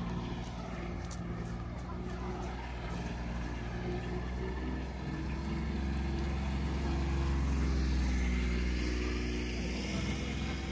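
Engine of a John Deere Gator utility vehicle running as it drives past close by, swelling to its loudest around eight seconds in, with crowd voices in the background.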